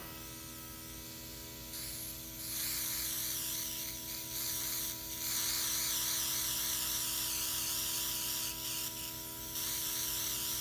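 Luminess Air airbrush makeup system spraying liquid eyeshadow: a hissing stream of air and makeup from the airbrush, starting about two seconds in and running in long spells with a few short breaks, over the steady hum of its running compressor.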